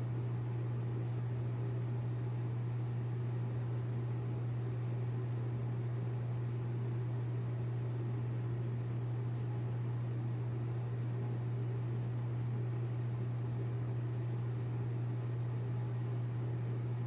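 Steady low machine hum with an even hiss over it, unchanging throughout.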